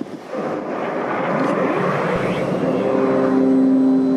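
A loud rushing sound builds up, like a jet or steam effect. About two and a half seconds in, sustained low musical tones join it. This is the show's soundtrack played over loudspeakers.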